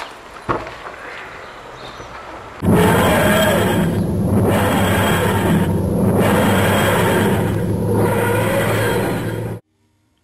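Added time-machine sound effect: a loud, dense whooshing rumble over a steady low hum starts suddenly about two and a half seconds in, swells and dips every second or two, and cuts off abruptly near the end. A single knock is heard about half a second in.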